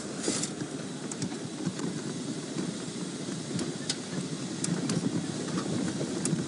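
Open safari game-drive vehicle driving along a sandy dirt track: a steady low engine and road rumble, with a few faint high ticks.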